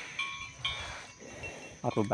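Soft background music of sustained chime-like tones, held steady, coming in just after the start.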